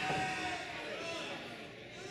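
A single drawn-out shout, slowly falling in pitch and fading after about a second and a half.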